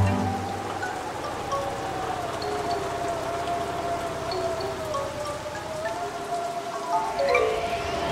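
Cartoon storm sound effects: rain falling, with a wavering held tone and scattered chime-like notes over it, and a rising whoosh about seven seconds in.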